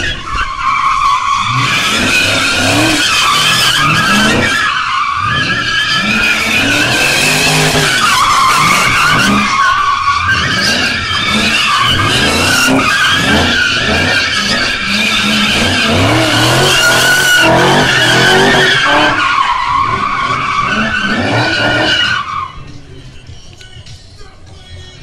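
BMW E30 drift car's engine revving hard, the revs rising and falling, while its rear tyres squeal continuously through a long drift. The sound drops off sharply about two seconds before the end.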